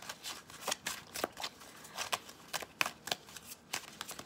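A deck of tarot cards being shuffled by hand: short, sharp card snaps and slaps in an irregular string, a few each second.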